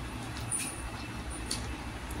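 Hand-eating sounds: fingers mixing rice on a plate, with a few soft clicks, over a steady low background rumble.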